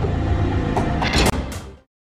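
Dramatic background music swelling into a short noisy sting about a second in, then cutting off to silence near the end as the scene ends.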